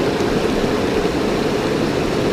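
Steady rush of fast river water running over rocks.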